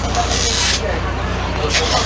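City bus interior with the diesel engine running steadily, a low even drone, and a loud burst of hiss from about a quarter to three-quarters of a second in.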